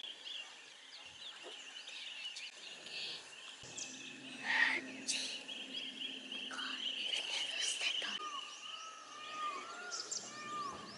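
Forest birds chirping and calling, with a steady high trill through the middle and one louder call about halfway; a repeated lower call starts near the end.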